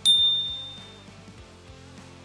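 A single bright ding from a notification-bell sound effect. It rings out once and fades over about a second, over quiet background music.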